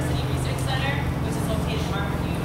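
A steady low mechanical hum, like an engine or motor running, under faint, broken speech.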